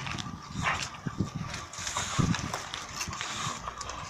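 A dog snuffling and breathing hard through its nose while it tugs at a branch, with the branch's twigs rustling and clicking.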